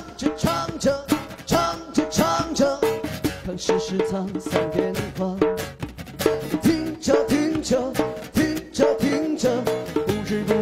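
Live acoustic song: a man sings while strumming an acoustic guitar, with drum accompaniment keeping a steady beat.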